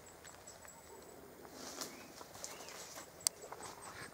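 Quiet forest background with faint rustling and a few small clicks, one sharper click near the end, and a thin high tone that comes and goes.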